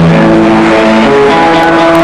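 Live band music: loud sustained notes and chords held over the beat, changing pitch a few times, with no singing.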